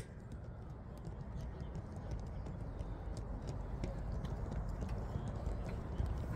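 Faint, irregular footsteps of several people walking on an athletics field, over a low, steady outdoor rumble.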